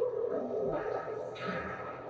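Soundtrack of the anime episode being watched: a drawn-out voice-like sound with sound effects, growing gradually quieter.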